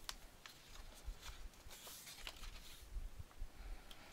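Kraft cardstock being folded along its score lines and pressed flat with a bone folder: faint, scattered paper rustles and small clicks.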